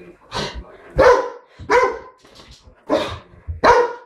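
Large black dog barking repeatedly, about five loud barks in quick succession.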